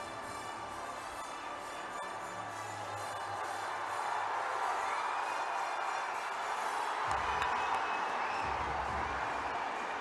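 Background music over the noise of a large cheering crowd, getting louder about four seconds in.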